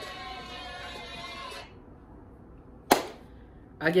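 Audio of the rap cypher video playing back, voices over music, which cuts off suddenly about one and a half seconds in as it is paused. A single sharp click follows about three seconds in.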